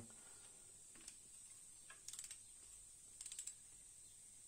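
Faint bursts of rapid clicking from a ratcheting torque wrench as it tightens the thermostat housing bolts, twice, a little over a second apart.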